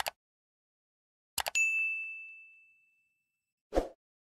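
Sound effects of a subscribe-button animation. A mouse-click double tick, then a second double click about a second and a half in, followed by a bright bell-like ding that rings and fades over about a second and a half. A short whoosh comes near the end.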